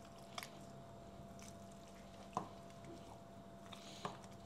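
Faint squishing of a metal potato masher pressing soft boiled potatoes with butter and milk in a glass bowl, with a few soft knocks, the loudest about two and a half seconds in.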